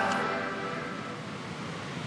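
Steady wash of ocean surf, a noisy hiss that eases slightly in level.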